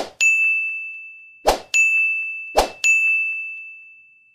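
Three pop-and-ding sound effects of an animated subscribe end screen, one about every second and a half: each is a short sudden pop followed by a bright bell-like ding that rings on and fades.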